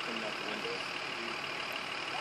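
A steady idling engine, with faint voices talking in the background.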